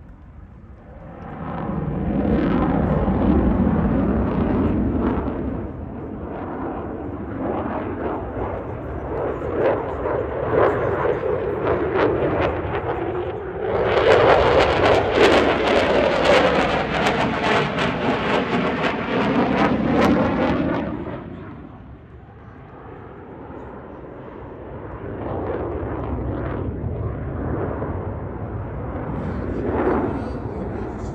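Single-engine F-16 fighter jet in a display flight. The engine noise swells early, stays loud, then peaks for about seven seconds in the middle with a sweeping, phasing tone as the jet passes, before dropping away and building again near the end.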